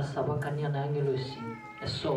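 A man speaking with a low voice, followed about one and a half seconds in by a short, high-pitched call that bends slightly in pitch.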